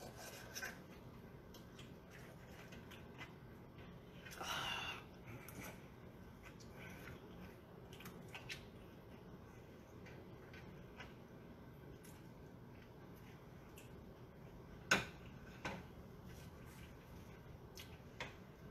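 Quiet kitchen room tone with a few light clicks and scrapes of a metal fork against a roasting pan as lobster meat is picked out. There is a brief scrape about four and a half seconds in and a sharp click near fifteen seconds.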